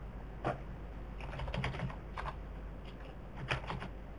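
Computer keyboard being typed on: irregular short key clicks, some in quick runs, over a low steady hum.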